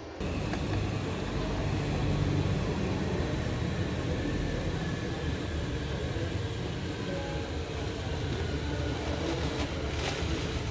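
Steady low rumble of outdoor background noise, with a few faint, brief tones above it.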